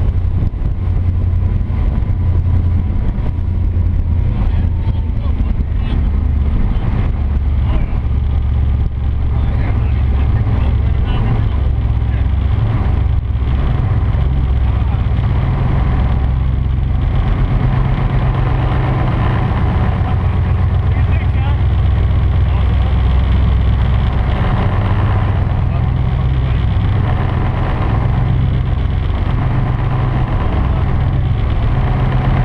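Twin Mercury Racing 1350 V8 engines of an offshore catamaran running steadily under way, a loud low drone mixed with rushing water from the wake.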